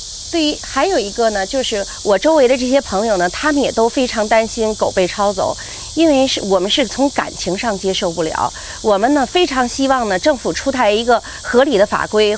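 A woman speaking Mandarin Chinese in an interview, over a steady high hiss.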